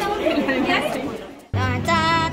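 People chatting over background music, the talk fading away; then a sudden cut about three-quarters of the way in to loud music with a held, sung-sounding melody.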